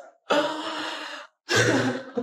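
A woman's two long, breathy sighs of distress, the second starting about a second and a half in.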